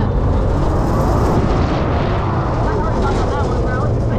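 Rushing wind buffeting the rider-held camera's microphone as the swinging fair ride carries it high through the air, a loud, steady rumbling noise.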